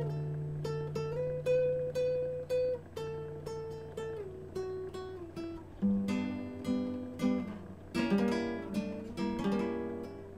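Solo acoustic guitar playing the instrumental introduction to a song: a picked melody over held bass notes, with strummed chords in the second half.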